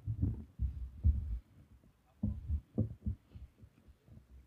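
Irregular low thumps and pops from breath and quiet murmuring close into a handheld microphone, with a few short snatches of voice about two seconds in.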